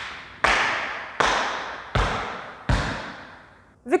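Tap shoes' metal taps striking a wooden studio floor: four evenly spaced, slow strikes, each ringing out before the next.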